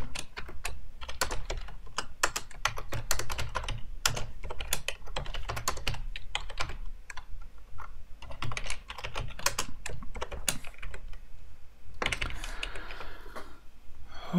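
Typing on a computer keyboard: a quick, irregular run of keystrokes, with a short pause shortly before the end.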